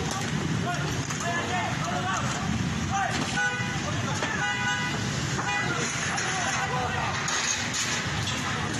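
Car horns honking in two or three short blasts a few seconds in, over a crowd's shouting voices and the steady noise of the street.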